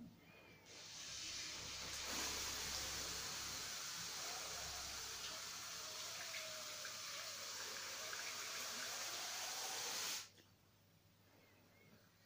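Thin streams of water running out of drinking straws into small plastic bowls, forced out of a plastic bottle by the air of a balloon deflating into it. A steady trickle that starts about a second in and stops abruptly near the end.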